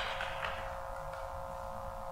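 Room tone: a steady, faint hum with a thin, even tone over it, and a faint rustle or tap about half a second in.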